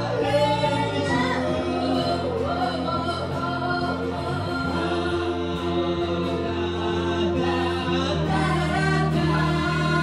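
A live song by a small band: a woman singing lead into a microphone over electric bass and guitar, the bass holding long low notes.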